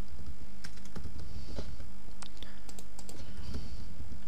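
Computer keyboard typing: irregular keystroke clicks, a few per second, over a steady low background hum.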